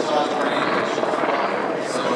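A man's voice over a public address system, with a steady, rapid flutter beneath it.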